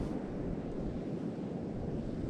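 Wind buffeting the microphone: a steady, uneven low rumble with no distinct events.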